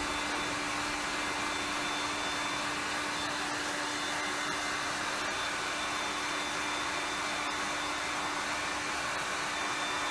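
Small handheld heat gun running steadily, a constant motor hum under a rushing hiss of blown air, used to pop air bubbles in wet acrylic pour paint.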